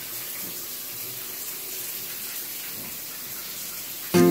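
Shower running: water spraying from a wall-mounted showerhead onto a tiled shower stall, a steady even hiss.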